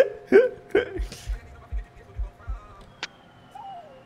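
Laughter in short bursts, fading out after about a second and a half, followed by a few low thumps about half a second apart.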